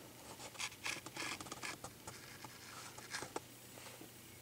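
Faint handling noise of a plastic blister pack: light scratching and rubbing with a few short crinkly clicks, two of them close together near the end.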